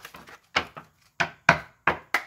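About four sharp taps and knocks, with fainter clicks between, of items being handled and set down on a tabletop.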